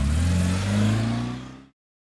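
Car engine revving and pulling away, its pitch climbing slowly, then fading out to silence at about 1.7 s.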